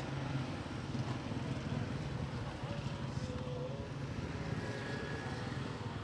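Street ambience: a steady low motor hum, like nearby traffic or an idling engine, with faint voices in the background.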